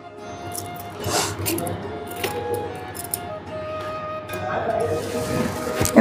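Soft background music with long held notes. A few brief clicks and rustles come from a gold-polished silver garland being handled and hung.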